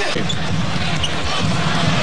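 Live basketball game sound from a TV broadcast: the ball bouncing on the hardwood court over a steady arena crowd murmur.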